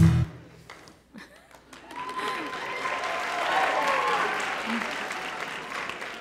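Theatre audience applauding with some voices cheering, rising about two seconds in and tapering off toward the end.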